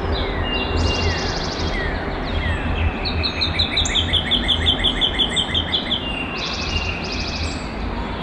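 Several songbirds calling and singing together: short falling notes, brief buzzy high trills near the start and end, and a rapid even trill of about five notes a second lasting about three seconds in the middle. A steady low rumble lies underneath.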